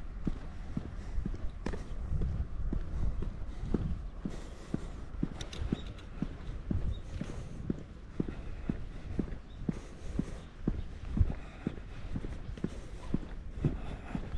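Footsteps of a person walking at a steady pace on an asphalt road, about two steps a second, over a low rumble.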